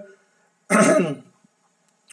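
A man clearing his throat once, a short rough burst a little under a second in.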